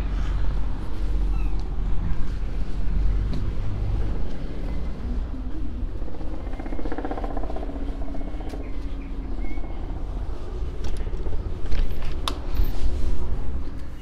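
Street ambience: a steady low rumble of traffic, with a few sharp clicks near the end.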